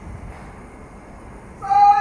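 A loud, high-pitched cry breaks in suddenly about one and a half seconds in and carries on past the end, over a faint background.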